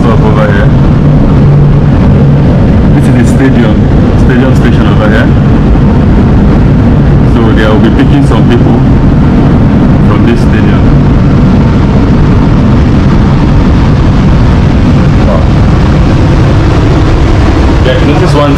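Steady rumble and low hum inside a light-rail metro car, with faint voices of other people in the background now and then.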